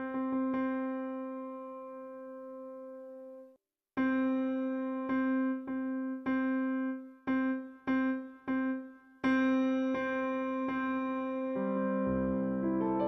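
Viscount Physis Piano, a physical-modelling digital piano, sounding one note around middle C struck again and again: a few long held strikes and a run of short repeated ones, with lower notes joining as a chord near the end. The Damper Resonance parameter is set to 10, which sets how much the free strings ring in sympathy when the sustain pedal is down.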